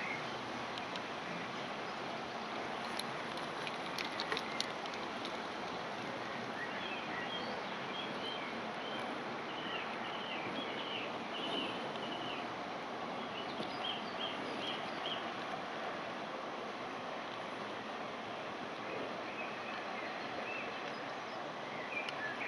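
Steady rushing of a nearby river, with small birds chirping on and off from about six seconds in. A few light clicks about three to four and a half seconds in.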